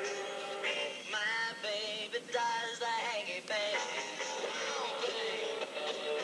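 A recorded pop song playing, with a lead vocal singing over the backing.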